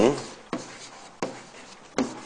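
Writing by hand: a few short, separate scratching strokes of a pen or marker, about one every three-quarters of a second, as phonetic symbols are written out.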